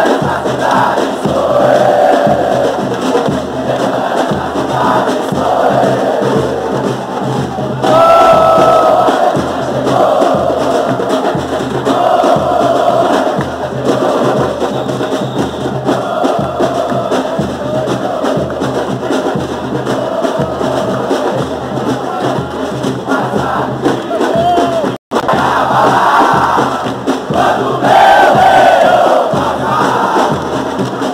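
A large stand of football supporters chanting and singing in unison, loud and sustained, over a steady drumbeat.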